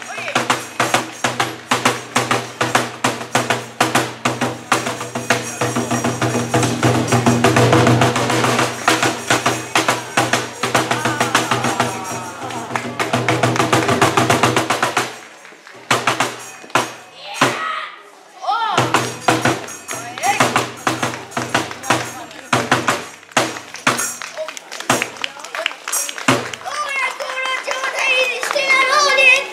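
Bitchū kagura accompaniment: a fast, dense drumbeat with small hand cymbals under a held, chanted voice. The playing drops away about 15 seconds in and comes back a few seconds later.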